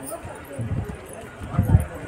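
Indistinct voices with an uneven low rumble.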